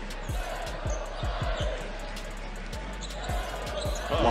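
Basketball dribbled on a hardwood court: a steady run of bounces, about two to three a second.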